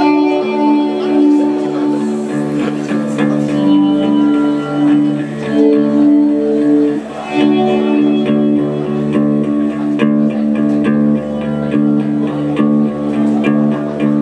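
Live indie rock band playing an instrumental intro: two electric guitars hold ringing, sustained chords and melody notes, with electric bass guitar coming in about two seconds in and drums underneath.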